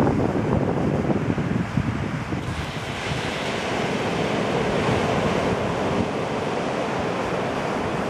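Small ocean waves breaking close to shore and washing up the sand in a steady surf wash. Wind rumbles on the microphone, strongest in the first couple of seconds.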